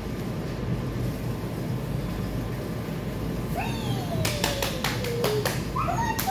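A steady low hum in a small kennel room. About three and a half seconds in, a long thin whistle-like tone slides downward, then a quick run of about six sharp taps follows.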